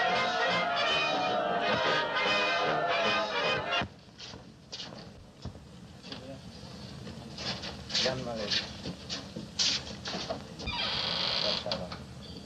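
Brass band playing loudly, cut off abruptly about four seconds in. A quieter stretch follows, with scattered clicks and a few short voice sounds.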